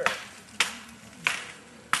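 Four sharp clacks, evenly spaced about two-thirds of a second apart, each with a short ring.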